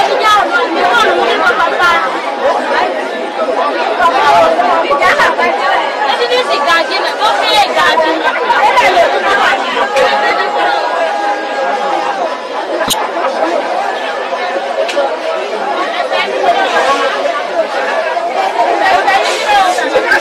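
Several voices talking loudly over one another, the lively chatter of a crowded open-air market.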